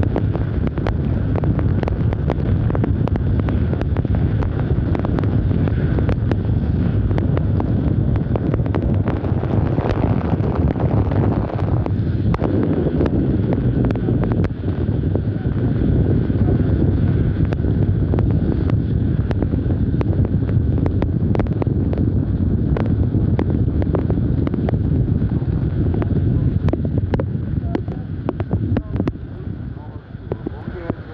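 Strong wind rushing over the microphone in heavy rain: a loud, steady low rumble with many small sharp ticks through it. It eases near the end.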